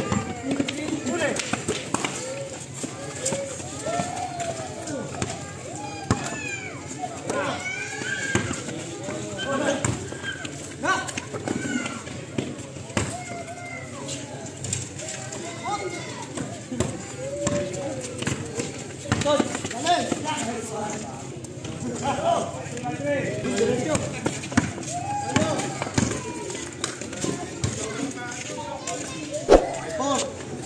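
Several people's voices calling out and talking over one another during an outdoor pickup basketball game, with scattered short knocks of the ball bouncing on the concrete court.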